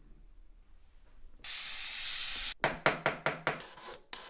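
Hand filing on a gold ring at a jeweller's bench. It is quiet at first, then one long scraping stroke comes about a second and a half in, followed by a quick run of short, faintly ringing strokes.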